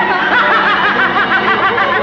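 A man's high-pitched laughter, its pitch wavering rapidly up and down for over a second before tailing off near the end.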